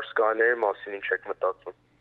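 A man speaking, his words breaking off about a second and a half in.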